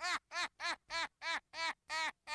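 A rapid, high-pitched laugh, 'ha-ha-ha' at about four even syllables a second, slowly fading.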